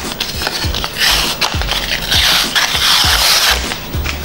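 Paper facing being peeled off a foam-board tail piece: a dry tearing rip about a second in, then a longer one from about two seconds in.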